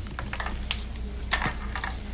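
Boxes and plastic packaging being handled on a store shelf: scattered light clicks, taps and rustles, over a steady low hum.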